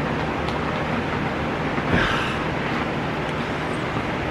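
Steady background noise with a low hum and an even hiss, like a running fan or air conditioner, with a brief soft breathy sound about two seconds in.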